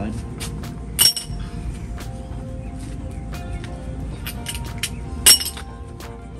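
Two sharp metallic clinks with a short ring, about a second in and again near the end, the second the louder: metal hand tools being handled and set down, over steady background music.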